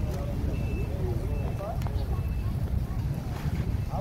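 Steady wind rumble buffeting the microphone, with faint voices in the distance, too far off to make out words.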